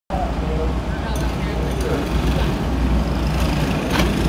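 Go-kart engines running at low speed on a dirt oval, a steady low hum, with people talking in the background.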